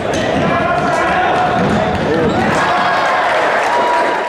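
Futsal match sound in a large sports hall: many voices shouting and calling, echoing, with the sharp knocks of the ball being kicked and bouncing on the hall floor.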